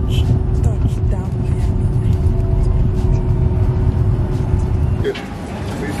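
Jet airliner cabin noise heard from a window seat: a loud, steady, low rumble of the engines and airframe as the plane moves on the runway. It cuts off abruptly about five seconds in.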